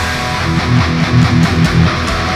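Distorted Schecter electric guitar playing a heavy metalcore riff, with a run of rhythmic low notes, about five a second, in the second half.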